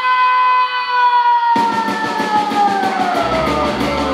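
Live rock band: a single electric guitar note held steady, then drums and cymbals crash in about one and a half seconds in while the note slides slowly down in pitch. Deep bass joins near the end.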